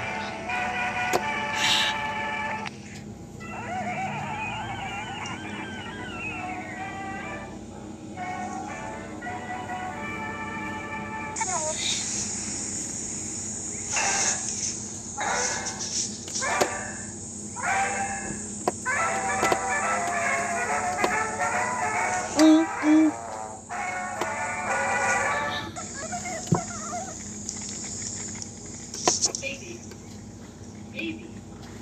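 Soundtrack of a 1930s black-and-white cartoon: music with voices mixed in, over a steady low hum.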